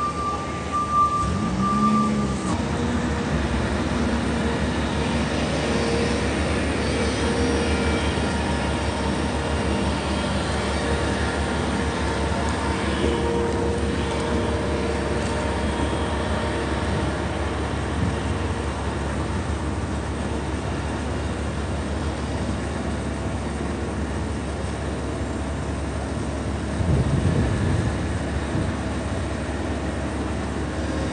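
Steady low rumble of city traffic on a wet street, with vehicles swelling past about two seconds in and again near the end. A short run of electronic beeps sounds in the first two seconds.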